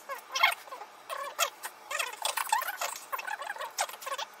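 Fast-forwarded chatter: voices talking at high speed, squeaky and high-pitched, with no low end.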